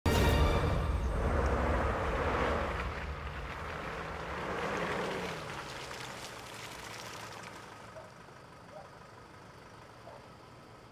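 Nissan Navara pickup truck driving up and slowing to a stop, its engine loudest at first and fading steadily away.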